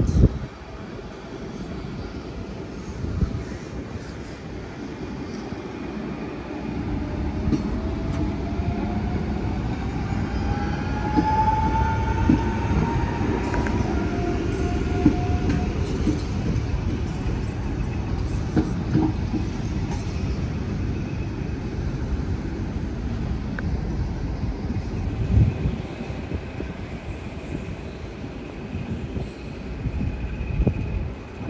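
Electric multiple-unit passenger train passing close by at low speed, its rumble building to a peak midway with irregular knocks of wheels over rail joints and points. A whine climbs in pitch about ten seconds in.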